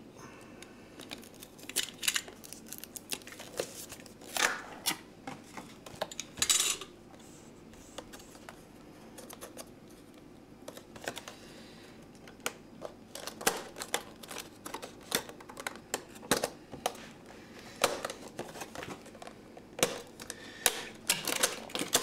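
Hands handling and opening a cardboard retail box in a clear plastic sleeve, with a utility knife: scattered clicks, taps and short rustles of plastic and card, with a couple of longer scrapes about four and six seconds in and busier clicking and crinkling in the second half.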